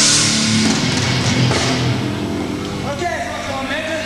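Live heavy metal band: a loud chord and cymbal crash ring out and fade over the first second or two, leaving a low steady amplifier hum. A voice comes in near the end.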